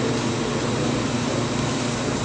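Steady rushing background noise with a low hum underneath and no speech.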